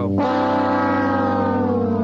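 A held synthesizer chord from a 1990s TV segment soundtrack. Its low notes stay steady while its upper notes glide slowly down in pitch.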